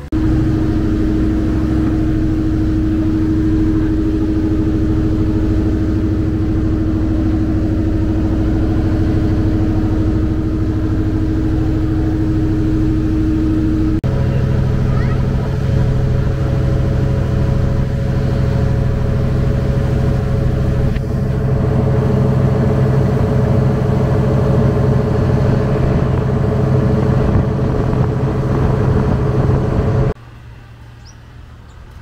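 Boat's engine running at a steady drone while under way, over the rushing noise of water and wind. About halfway through the drone abruptly shifts to a different, deeper pitch.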